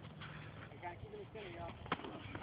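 Faint, indistinct voices, with one sharp knock near the end.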